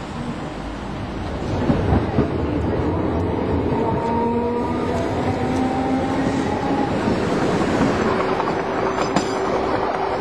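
Tram running on its rails: a steady rumble and rail clatter that grows louder about a second and a half in, with a few knocks, then thin whining tones from the wheels or motors from about four seconds in.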